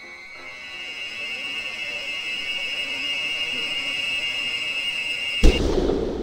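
Horror-film sound effect: a shrill, steady high tone swelling louder over the first few seconds, cut off by a sudden loud crash near the end that leaves a low rumble.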